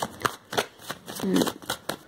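Tarot cards being shuffled and handled, a quick run of short, sharp card snaps across the two seconds.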